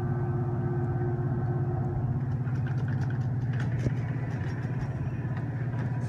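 Mitsubishi hydraulic passenger elevator: a steady low mechanical hum in the car while the doors close, with light rattling and a sharp click about four seconds in.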